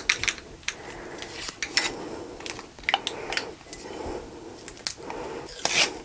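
Sublimation paper and heat-resistant tape being peeled off a freshly pressed ceramic mug: crinkling paper and tape tearing in scattered short crackles, with light knocks of the mug on a heat-resistant pad.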